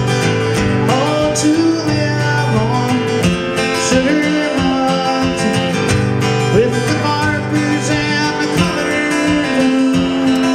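Steel-string acoustic guitar strummed steadily in a folk song, with a held melody line carried over the chords.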